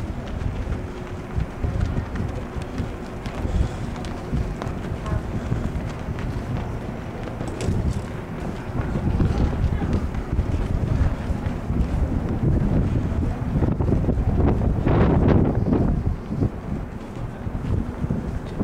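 Wind buffeting a handheld camcorder's microphone on an open ship's deck: a constant low, irregular rumble, growing louder about 14 to 16 seconds in.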